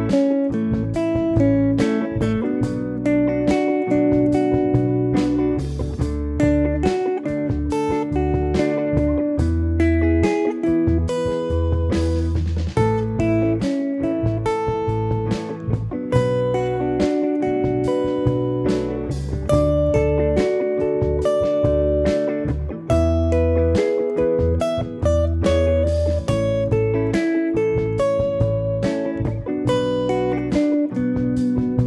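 Electric guitar, a Fender Telecaster, picking a single-note melody drawn from the chord tones of an A, B minor and E progression, with a bass line underneath from a backing track.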